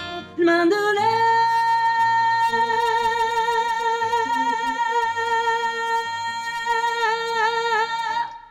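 A woman singing over an acoustic guitar: a brief phrase, then one long high note held for about seven seconds, wavering near the end before it stops, with plucked guitar notes underneath.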